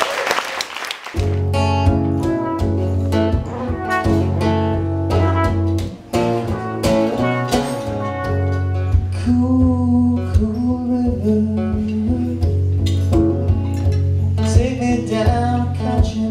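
Live acoustic guitar and trumpet playing a soul-folk song over a steady low bass line, with singing.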